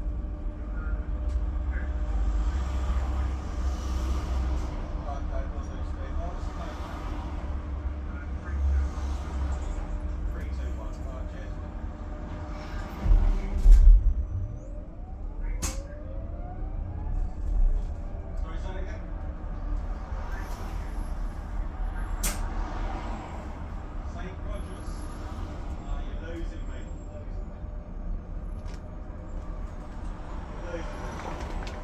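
Cabin noise inside an Alexander Dennis Enviro200 EV battery-electric bus on the move: steady low road rumble and a steady hum. About 13 seconds in there is a loud thump as the bus goes over a bump, followed by a brief rising and falling whine and a couple of sharp clicks.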